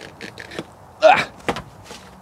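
A man climbing down off a compact tractor: faint scuffs and ticks, a short louder sound with a brief rising pitch about a second in, then a single sharp knock.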